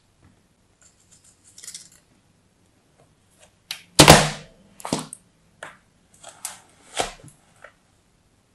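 Kinetic sand being scraped and cut with a craft knife over a plastic tray: a faint scrape early, then one loud knock about halfway through, followed by several smaller crunchy clicks and knocks.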